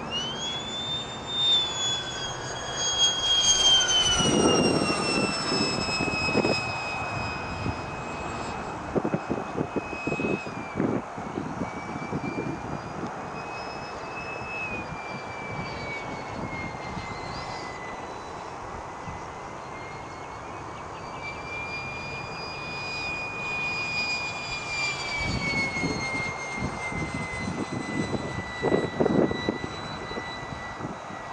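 High whine of an RC electric ducted-fan jet (Tamjets TJ80SE fan on a Neu 1509 motor, spinning about 53,000 rpm) in flight. The whine rises sharply right at the start, then slowly falls, with two later swells in pitch. Low gusty rumbles come a few seconds in and again near the end.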